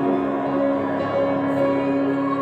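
A choir, women's voices to the fore, holding long sustained notes in a resonant church.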